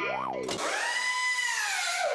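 Electronic logo-sting sound effects: a quick pitch sweep up and back down, then a long whine that rises, holds and slides down near the end.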